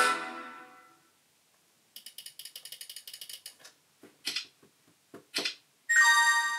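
Music fades out in the first second. Then comes a fast run of small clicks, about ten a second for under two seconds, followed by two louder clicks about a second apart, from a computer mouse on a lap tray. Music starts again at the very end.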